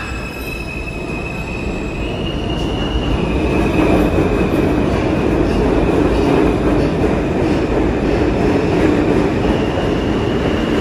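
New York City Subway E train of R160 cars pulling out of a station and accelerating. A high electric whine from the propulsion motors steps up in pitch in the first few seconds, while the rumble of wheels on rail builds and then stays loud from about three seconds in.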